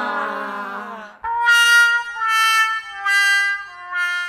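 Comic brass sound effect, the 'sad trombone' fail cue: a falling slide that fades out about a second in, then four held notes, each a step lower than the last.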